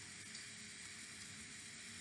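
Faint, steady hiss of room tone from the recording's background noise, with no distinct sound event.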